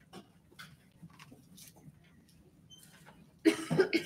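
Quiet room with faint scattered rustles and taps of Bible pages being turned to a new passage; near the end a man's voice breaks in loudly.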